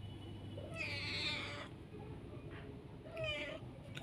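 A calico cat meowing twice: one long meow about a second in and a shorter one near the end.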